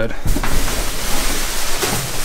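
Plastic bags and bubble wrap crinkling and rustling steadily as they are handled and pushed around inside a dumpster.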